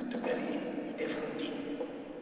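A man speaking: only speech.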